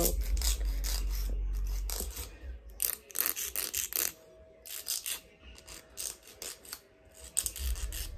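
Nail file rasping against the edge of a glued-on plastic full-cover nail tip in short, quick strokes that come in runs, as the sides of the tip are filed down to shape.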